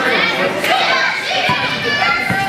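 Many young children's voices chattering and calling over one another in a large gym hall, with one low thump about one and a half seconds in.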